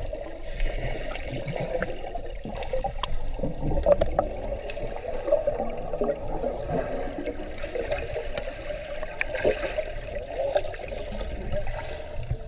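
Muffled underwater pool sound through a submerged camera: steady churning and bubbling water from swimmers moving around it, with a few faint clicks.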